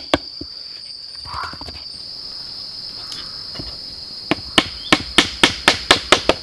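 Hatchet blows on wood: one just after the start, then a quick run of sharp strikes at about four a second from a little past four seconds in. A steady high insect drone goes on underneath.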